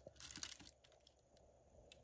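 Faint rustle of tissue paper and a few light clicks as a plastic action figure is set down on it in the first half second, then near silence.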